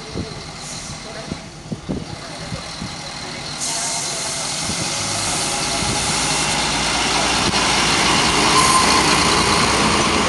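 Two coupled ČD class 814 Regionova diesel railcars pulling away from the platform: their diesel engines run under load and the sound grows steadily louder as the train gathers speed past. Wheel and rail noise comes in about three and a half seconds in.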